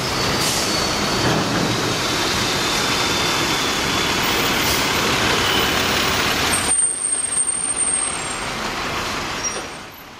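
Loud city-avenue traffic noise led by a large truck close by, which cuts off suddenly about seven seconds in. Quieter street noise follows, with a brief thin high whine.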